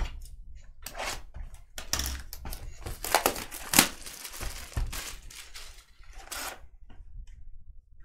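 Cardboard trading-card hobby box being torn open, a run of short tearing and crinkling rasps with one sharp crack about four seconds in.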